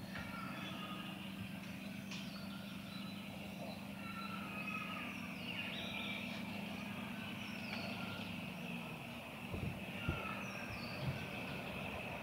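Forest ambience: small birds chirping and calling repeatedly over a steady low hum. The hum stops about nine seconds in, and a few soft knocks follow.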